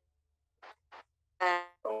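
A person's voice over an online voice call: a pause with two faint short hisses, then speech resuming about a second and a half in.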